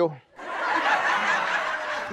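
Studio audience laughing, a steady wash of laughter that rises in about half a second in.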